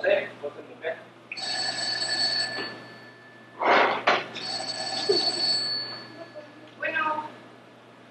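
Telephone ringing twice, each ring about a second and a half long. A short loud burst of noise comes just before the second ring.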